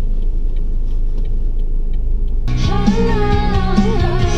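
Steady low road rumble inside a moving car's cabin; about two and a half seconds in, a pop song with a singing voice suddenly starts playing, just after the music was put on shuffle.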